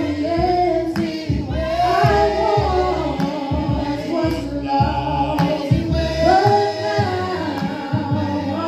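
A group of mixed men's and women's voices singing a hymn together without instruments, holding long notes and moving smoothly from one to the next.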